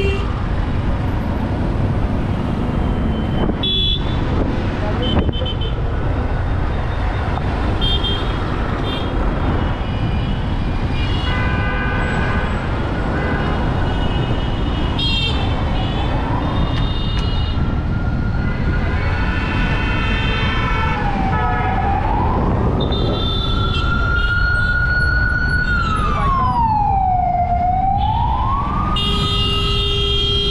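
Steady street-traffic and engine noise with many short horn honks from several vehicles. From a little past halfway, a siren wails slowly up and down, twice dipping low and rising again.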